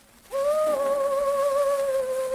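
Operatic soprano singing on a 1904 acoustic Victor disc recording. After a short pause, a new note starts about a third of a second in and is held with vibrato, dipping slightly in pitch a little later, over the steady surface hiss of the old record.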